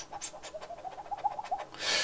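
Light clicks and taps of fingers handling components on a stripboard, with a faint wavering pitched sound through the middle and a short hiss near the end.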